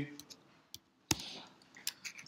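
Computer keyboard keys being typed: a few separate sharp clicks, the loudest about a second in, with fainter ones before and after.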